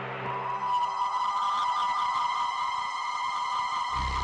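Eerie synthesized background score: a held high electronic tone with shimmering overtones swells in during the first second, as a lower drone fades away.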